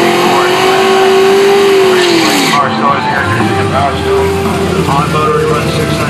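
Dart 363 cubic-inch V8 in a drag car, revved up and held at high rpm for about two seconds, then dropping back to a low rumble.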